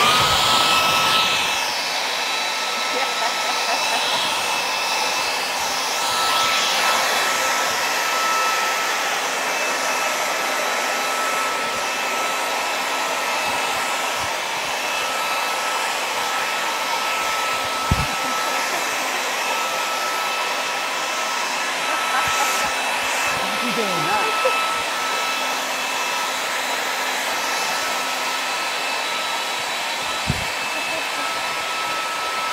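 Handheld leaf blower switched on and running flat out, a steady rush of air with a high whine over it, blowing upward to hold an inflated beach ball aloft.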